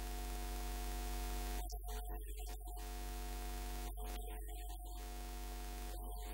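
Steady electrical mains hum with a ladder of buzzing overtones and a hiss from the sound system; the hiss cuts out briefly twice.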